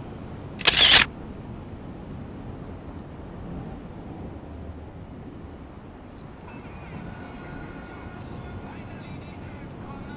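Steady outdoor background noise, broken about a second in by one short, loud hissing burst. Faint pitched sounds come in over the noise in the second half.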